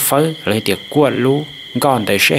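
A man's voice speaking continuously in Hmong, narrating the news.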